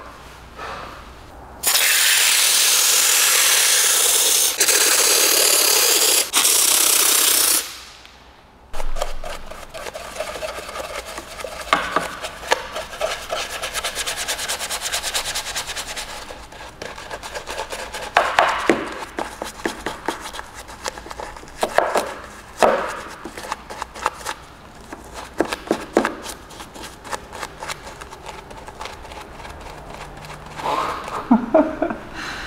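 A loud steady spray hiss lasts about six seconds, with two brief breaks, as cleaner goes onto the fuel-filler recess. Then a detailing brush scrubs the plastic filler housing and cap in a rapid, scratchy rub with louder surges of strokes.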